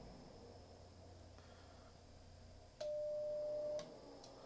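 Icom IC-7300 transceiver's CW sidetone: a single steady beep about one second long near the end, with a click as it starts and stops, as the radio is keyed to transmit for an SWR reading on 6 meters. Faint low hum before it.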